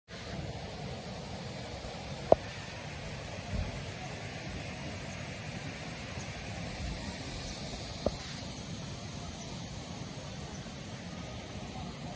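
Steady outdoor roadside background noise, a continuous hiss-like rush, broken by two short sharp clicks about six seconds apart and a soft low thump early on.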